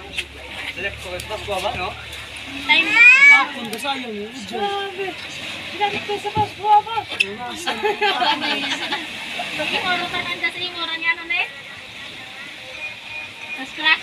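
Voices of several people talking and calling out, some high-pitched, with a few short knocks in the middle.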